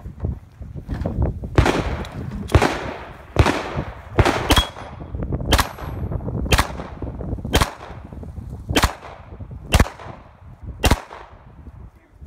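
Handgun fired about eleven times in slow, deliberate aimed fire at long range, roughly one shot a second, each crack trailing off in a short echo.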